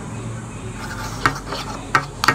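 Hands handling small plastic containers: light scraping with a few sharp clicks, the clearest about halfway through and again near the end.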